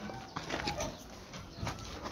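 Faint animal calls over low outdoor background noise, with a few light clicks.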